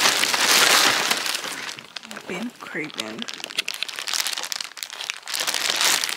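Clear plastic bag crinkling and rustling as it is handled close to the microphone, loudest in the first second and again near the end.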